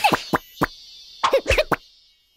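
Cartoon sound effects: a quick falling squeak, two small pops, then a quick run of pops and short falling squeaks about a second in, stopping just before the end.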